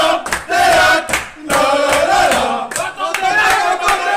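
A group of men chanting together in short repeated phrases with brief breaks, over regular hand clapping.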